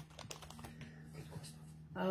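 Faint, irregular light clicks and taps of small objects being handled on a desk, over a low steady hum.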